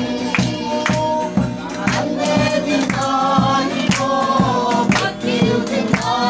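A group of voices singing together to a rope-laced, skin-headed barrel drum beaten by hand, keeping a steady beat of about two strokes a second.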